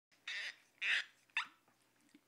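The top of a glass whisky bottle being twisted open: two short grating rasps, then a sharp pop about a second and a half in.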